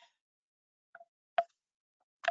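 Near silence broken by two short clicks: a faint one about a second in and a sharper, louder one about half a second later.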